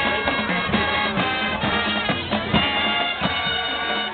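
Marching band playing live: brass holding sustained chords over drumline percussion, with regular drum strokes.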